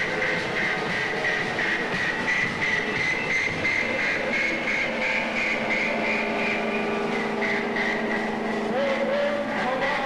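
Droning live electronic music from keyboards: several held tones under a pulsing high tone, with a short rising glide near the end.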